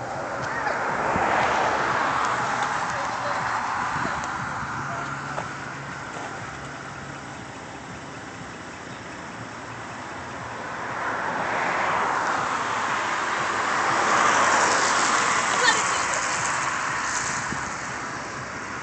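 Passing road traffic: a car's tyre-and-engine hiss swells and fades, once in the opening seconds and again from about eleven to seventeen seconds in.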